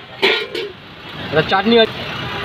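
People's voices talking, with a brief sharp knock near the start.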